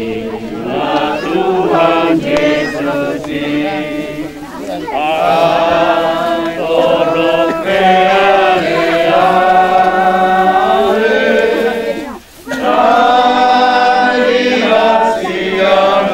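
A group of people singing a church hymn together, slow, with long held notes and a short break for breath about twelve seconds in.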